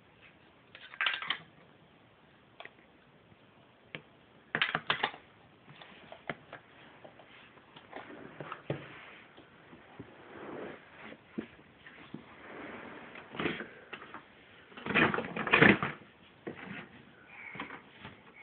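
Hard plastic toys clacking and knocking against a plastic storage drawer in short clusters of quick knocks, the loudest cluster late on, with quieter shuffling and rubbing between.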